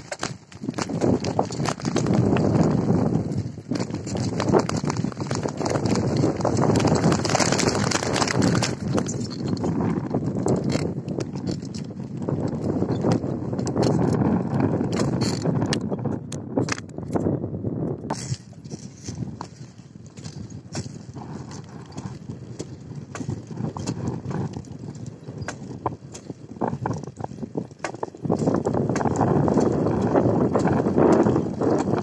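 Bicycle riding over rough dirt and then pavement: a steady rumble with rapid clattering rattles as the bike and its mounted camera jolt. The sound eases for a stretch past the middle and grows louder again near the end.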